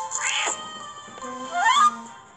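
Cartoon cat meow sound effect over soft background music: a short cat sound just after the start, then a louder meow rising in pitch near the end.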